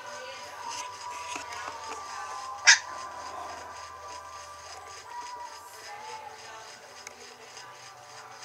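Background music with steady held notes, and one short sharp high sound about two and a half seconds in, louder than the music.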